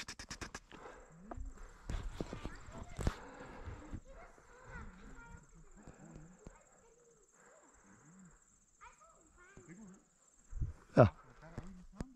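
A quick flurry of clicks at the start, then faint, distant animal calls coming and going, over a thin steady high-pitched buzz.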